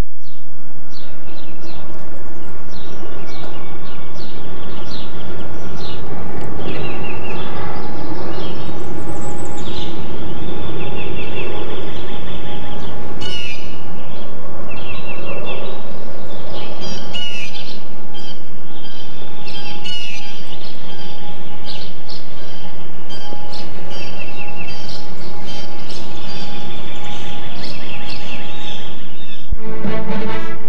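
Birds chirping and singing: many short, repeated chirps and trills over a steady low background rumble, cut off just before the end.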